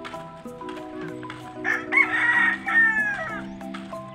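A rooster crowing once, starting about a second and a half in and lasting about a second and a half, the loudest sound, over background music that runs throughout.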